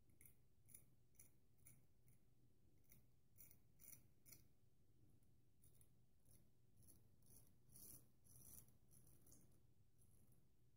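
Faint, short scrapes of a Haddon Brand full hollow ground straight razor cutting stubble through lather on the upper lip. The strokes come in runs of about two a second, with brief pauses between the runs.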